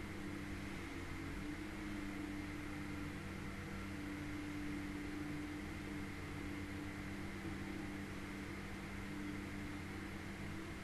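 Steady low hum and hiss of room tone picked up by the microphone, with no other sounds.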